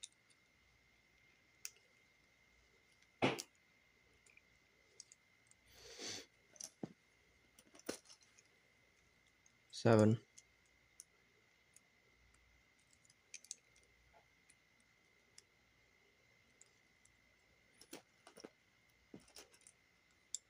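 Plastic building bricks being handled and pressed together: scattered small clicks and snaps, a louder snap about three seconds in, and a brief rustle of loose pieces being sorted around six seconds in.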